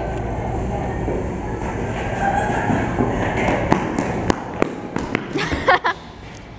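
Indistinct voices over a low rumble, then a run of sharp knocks or taps in the second half, roughly half a second apart.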